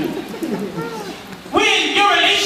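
A man's voice preaching through a microphone into the church sound system. It is softer and drawn out at first, then breaks out loud about one and a half seconds in.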